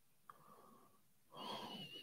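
Near silence, with a faint breath through the nose about a second and a half in that carries a thin whistle.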